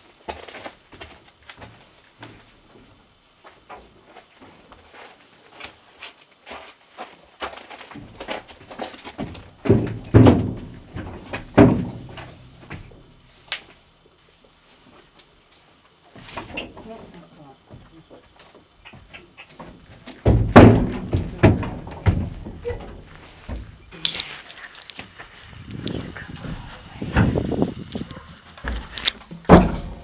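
A horse's hooves stepping on a trailer floor: heavy thuds in irregular clusters, loudest about ten to twelve seconds in and again from about twenty seconds in, with quieter knocks between.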